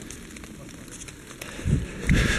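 Faint crackling and rustling of footsteps on snow-dusted forest leaf litter, with a low rumble rising near the end.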